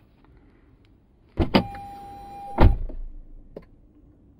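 Two quick clicks, then a small electric motor in the car runs with a steady whine for about a second and stops with a heavy thump. A light click follows near the end.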